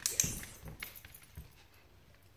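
A brief metallic jingle in the first half-second, then scattered light taps and soft thuds of a dog's paws and a person's footsteps on a hardwood floor.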